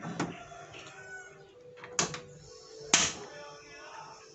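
Metal cookware on a gas stove being handled: two sharp clanks about a second apart as the rice pot is set on the burner and lidded.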